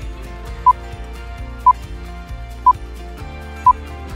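Countdown timer beeps: four short beeps at one steady pitch, one a second, over steady background music.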